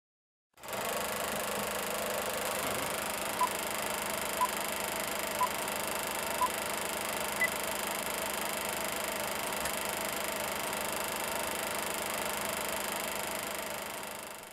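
Old film projector sound effect: a steady mechanical whir starting about half a second in, with short beeps once a second like a film countdown leader, four at one pitch and a fifth higher. The whir fades away near the end.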